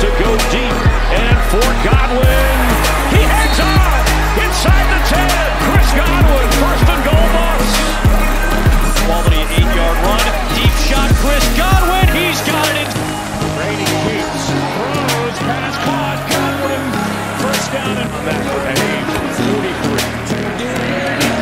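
Hip-hop backing track with a deep bass line and rapid hi-hat clicks; the deep bass drops out about twelve seconds in.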